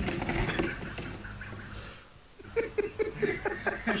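A noisy clatter that fades over the first second or so, then a person laughing in a quick run of short, rhythmic bursts in the second half.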